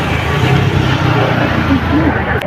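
A steady low rumble with indistinct voices over it.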